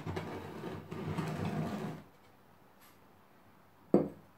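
Gritty scraping and rustling for about two seconds as a juniper cutting is pushed down into the granular substrate of a terracotta pot, then a single sharp knock near the end.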